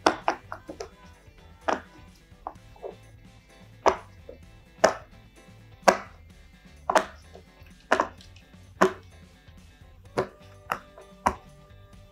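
Jumbo silicone pop-it fidget toy, its hard side being pressed bubble by bubble: a string of sharp pops at an uneven pace, roughly one or two a second, some much louder than others.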